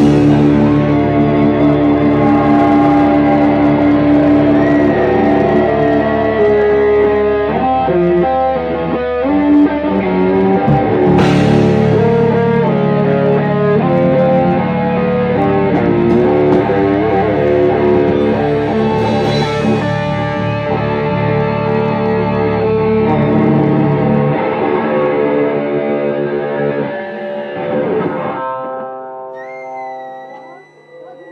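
Live metal band playing: distorted electric guitars and bass holding sustained, slowly changing notes, with a sharp hit about eleven seconds in. The low notes drop out about 24 seconds in and the sound dies away near the end as the song finishes.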